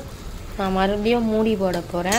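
A woman's voice speaking one drawn-out phrase, starting about half a second in; no clear cooking sound stands out.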